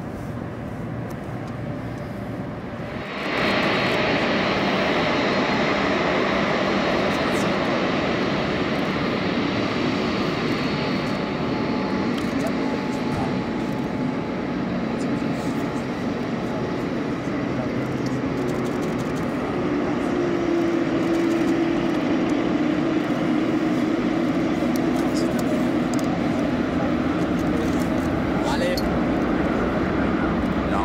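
Jet engines of a Boeing 787 running as it is pushed back by a tug: a steady jet roar with a high whine. It becomes suddenly louder about three seconds in, and a lower steady tone comes in during the second half.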